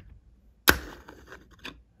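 Lego pieces handled and set down on a hard tabletop: one sharp plastic knock about two-thirds of a second in, then a couple of faint clicks.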